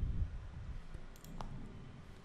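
Faint clicks from a computer in use: a dull low thump at the start, then a few small sharp clicks about a second and a half in.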